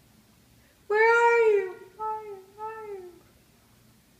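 A toddler's high-pitched voice calling out: one loud drawn-out call that rises and falls, then two softer, shorter calls.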